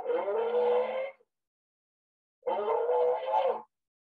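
Inspiratory stridor in a patient with multiple system atrophy: two pitched, noisy in-breaths, each about a second long, with a slight rise in pitch as each begins. The sound comes from the vocal cords coming together and tightening as the patient breathes in.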